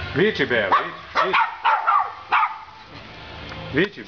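Dogs barking, a rapid run of short high-pitched barks and yips in the first two and a half seconds, then a lull and another bark near the end.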